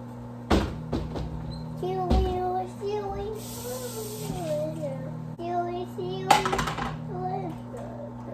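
Microwave oven running with a steady low hum while it cooks a bag of rice. A child's voice makes long, sliding notes over it, and a few knocks and a clatter come about half a second, two seconds and six seconds in.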